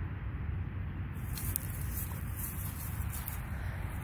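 Outdoor background noise: a steady low rumble, with faint rustling and crackles joining about a second in.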